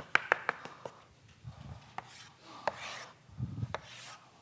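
Chalk on a blackboard: a run of sharp taps as the chalk strikes the board, several close together at the start and a few more spaced out, with a brief scrape of a stroke in between.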